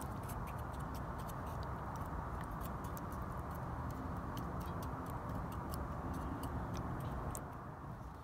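Propane turkey-fryer burner running steadily under a cast iron Dutch oven, a constant low rushing noise, with scattered light ticks and crackles over it.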